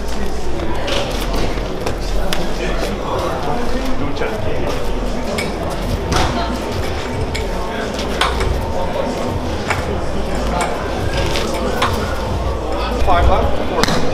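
Scattered sharp smacks of gloved punches hitting pads and gloves, over the steady chatter of many people in a busy room.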